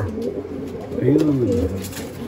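Racing pigeons cooing, with one low coo rising and falling about a second in.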